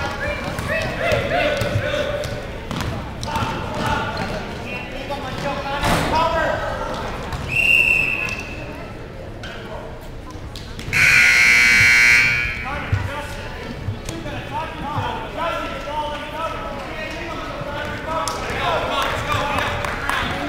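Basketball game sounds in a gym: a ball bouncing and voices throughout, a short referee's whistle blast about eight seconds in, then the scoreboard buzzer sounding for about a second and a half, the loudest thing here.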